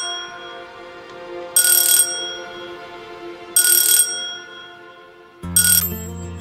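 Video door-phone intercom ringing: three short, bright electronic chimes about two seconds apart, over background music.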